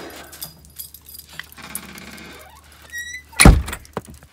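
A door squeaking briefly about three seconds in, then a loud thump as it shuts.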